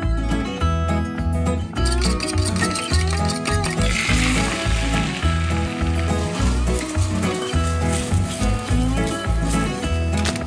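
Background music with a steady beat, with beaten eggs sizzling in a hot skillet from about two seconds in, loudest soon after they start.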